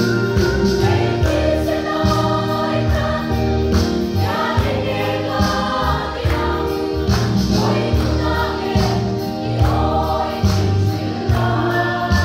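A women's choir singing a Mizo gospel hymn together over a steady beat.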